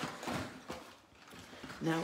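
Clear plastic packaging rustling and crinkling as craft kit contents are lifted out of a box, busiest in the first second and then quieter.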